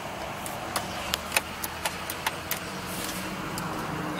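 About ten sharp, irregularly spaced clicks inside a car cabin, over a steady low hum.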